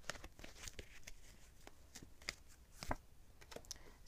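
Tarot cards being shuffled and handled: faint, irregular soft clicks and rustles of card stock, one sharper click about three seconds in.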